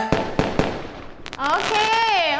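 Fireworks sound effect as the music cuts off: a few sharp pops and a crackle that fades away. About three-quarters of the way through, a voice calls out with a swooping, sliding pitch.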